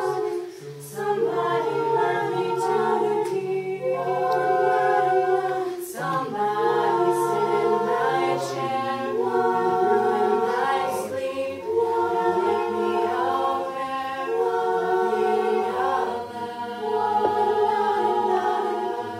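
Co-ed a cappella group singing in close harmony: several voices holding chords that change every second or two, with a brief drop in level about half a second in and a short break near the middle.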